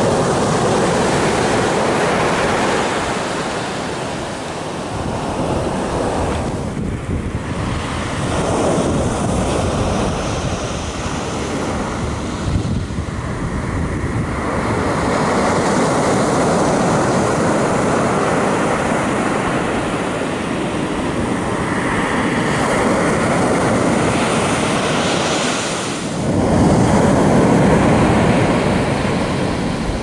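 Ocean surf washing on a beach, rising and falling in swells, with wind gusting on the microphone and a few abrupt breaks in the sound.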